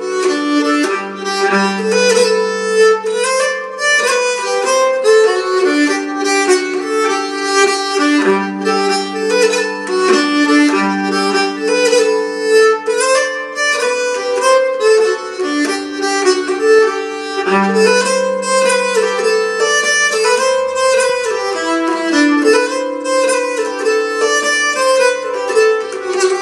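Nyckelharpa (Swedish keyed fiddle) bowed solo, playing a lively jig: a quick run of melody notes over longer-held lower notes.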